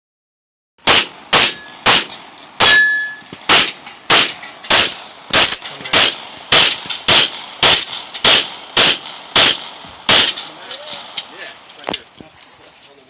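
A fast string of about seventeen gunshots, roughly two a second, several followed by the high ring of a steel target being hit. The firing stops about ten seconds in, leaving a few fainter clicks and knocks.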